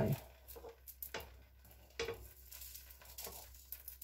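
Pancake batter frying faintly in a frying pan, with a few light clicks and scrapes as a utensil pokes at the pan to lift the pancake's edge.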